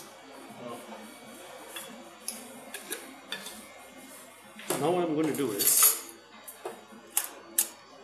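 Ice and glassware clinking as a glass chilled with ice is emptied. A few light clinks come early, then two sharp clinks near the end.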